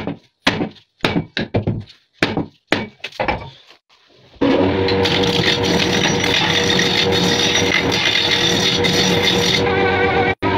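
Sharp wooden knocks, about two a second, as a log blank is knocked into place on a wood lathe. About four and a half seconds in, loud steady music with distorted electric guitar cuts in and stays.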